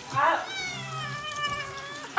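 Domestic cat yowling in protest while being bathed under a faucet: a short rising cry, then one long drawn-out meow.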